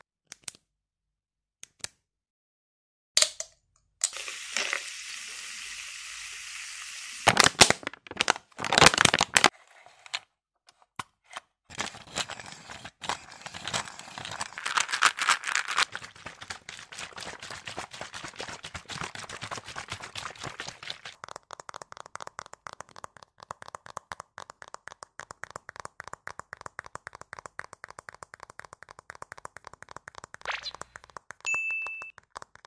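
ASMR trigger sounds made along with hand gestures: after about three seconds of near silence, a steady hiss, then a few loud sharp crackles, then a long run of rapid fine crackling and clicking that grows quieter in the second half.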